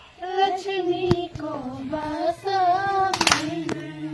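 A group of girls singing a Nepali Bhailo festival song together, unaccompanied, in a held, wavering melody, with a few sharp clicks (about a second in, and twice near the end).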